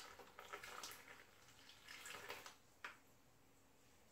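Near silence, with faint trickling and drips of water as a siphon tube drains a glass of water into a basin, fading out after about two and a half seconds. A faint click comes just before three seconds in.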